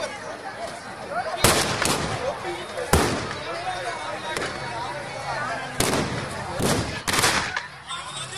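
Firecrackers packed inside a burning Ravana effigy going off: sharp bangs at uneven intervals, the first about one and a half seconds in, over the chatter of a crowd.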